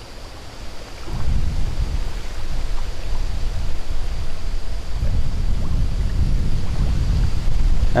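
Wind buffeting the microphone: a loud, low rumble that starts about a second in and surges and eases.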